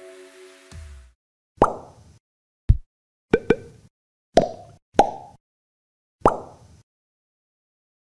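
Background music fading out, then seven short, sharp sound-effect hits in an irregular sequence, each dying away quickly, one of them a low thud. These are the effects of an animated outro logo.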